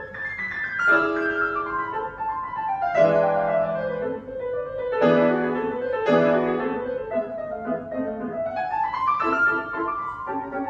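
Solo grand piano played in a classical style: quick descending runs over sustained chords, with heavy accented chords about three, five and six seconds in, then a rising run near the end.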